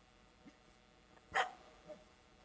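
A Finnish Spitz gives one sharp, loud bark about one and a half seconds in, then a shorter, fainter bark just before the end.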